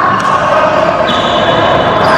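Badminton play in a large indoor hall: racket strikes on the shuttlecock and players' footwork on the court, over a dense, steady hall din with sustained tones in it.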